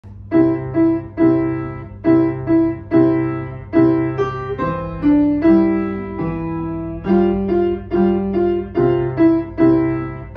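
Grand piano played by a young student: a simple melody over held lower bass notes, each note struck and left to ring away, in short-short-long groups at a moderate, even pace.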